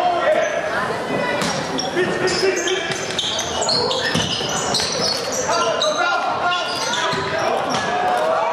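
Sounds of an indoor basketball game: sneakers squeaking on the court in many short high chirps, a ball bouncing, and the voices of players and crowd.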